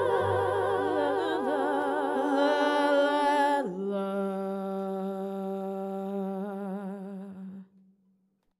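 Closing bars of a folk song: a woman's voice holds a long wordless note with wide vibrato. About four seconds in it drops to a lower final note, which is held and then fades out just before the end.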